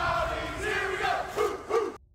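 A crowd shouting together in a sustained yell, with two short shouts near the end before it cuts off abruptly.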